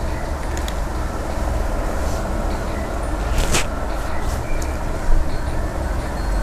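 Steady low background rumble with a haze of hiss, and a single sharp click about three and a half seconds in.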